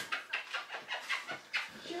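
Dog panting quickly and evenly, about six breaths a second.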